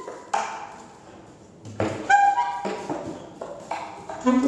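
Tenor and alto saxophones improvising free jazz: about five short, sharply attacked notes with pauses between them, each ringing out briefly.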